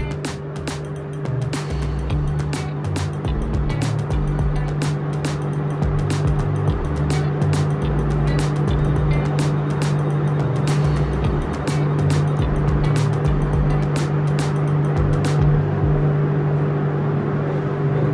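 Extech MG500 insulation tester running a 10 kV insulation test: a steady low electrical hum with fast, uneven ticking that stops about fifteen seconds in.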